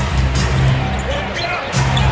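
Arena broadcast sound: music with a steady low bass plays over court noise of a basketball being dribbled, with faint voices in the background.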